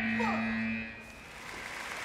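Match-end buzzer at a taekwondo bout sounding one steady tone for about a second as the clock hits zero, signalling the end of the match.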